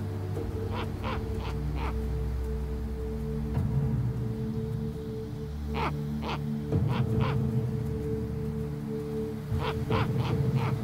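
Adult snowy owl giving short, harsh alarm calls in quick runs of about four, three runs in all, as a polar bear comes close, over a soundtrack of sustained held notes.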